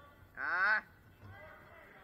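A single short, loud shout that rises in pitch, about half a second in, with faint voices after it.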